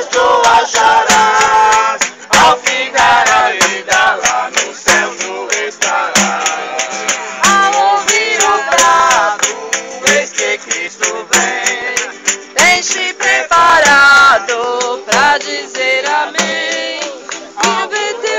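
A group of people singing a worship song to acoustic guitar, with a steady percussive beat running under it.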